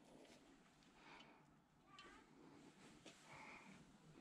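Near silence, with a few faint short animal calls.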